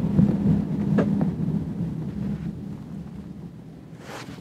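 Low, steady car-cabin rumble from the engine and road, fading away over the last second or two, with a short click about a second in.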